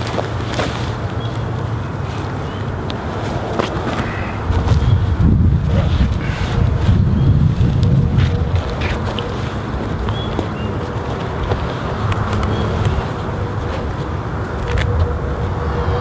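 Wind rumbling on the microphone, swelling for a few seconds midway, with light rustling and crinkling of a spun-bonded polyester row cover being spread out.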